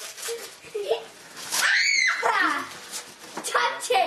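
A child's excited high-pitched squeal about halfway through, rising and then falling in pitch, among children's excited voices.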